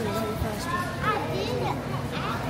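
Voices talking, children's among them, over the steady background of a busy store; no single word stands out.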